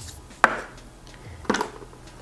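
Two short, sharp clicks about a second apart, from makeup items being handled.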